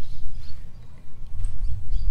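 Outdoor field ambience: a loud, uneven low rumble that dips briefly in the middle, with a few short, high bird chirps above it.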